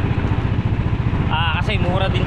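Small boat's engine running steadily under way, a fast low throb. A man's voice comes in over it near the end.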